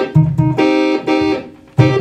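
Electric organ playing a run of short, detached chords, each held about half a second, with a brief gap before a new chord near the end.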